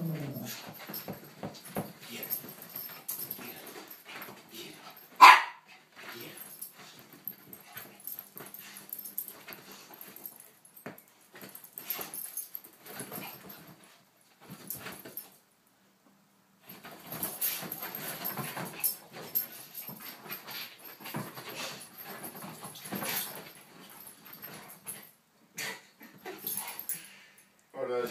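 Dogs playing and wrestling on a couch: scuffling on the cushions, with one loud, sharp bark about five seconds in.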